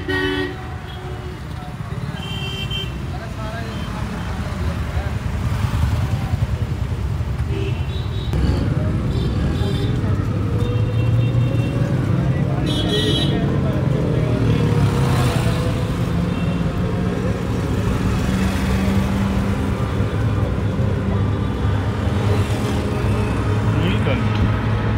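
Town street traffic with several short vehicle horn toots through the first half, under a steady low drone of road and motor noise that grows louder about a third of the way in, once the ride in an open auto-rickshaw gets under way.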